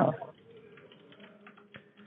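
Faint, irregular clicking over a low steady hum, heard through a phone line, with one sharper click near the end.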